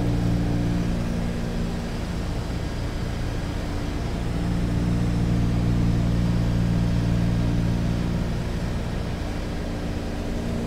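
Steady drone of a DC-3's twin radial piston engines and propellers on approach, a deep pulsing tone that swells and fades slowly, while the landing gear travels down.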